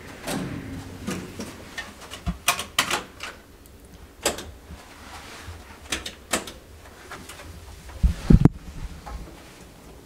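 Sharp clicks and knocks from people moving about a small hotel room and handling things. A heavy thud comes about eight seconds in.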